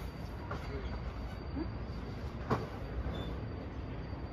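Steady low rumble of wind on the microphone at a high open-air lookout, with one sharp click about two and a half seconds in.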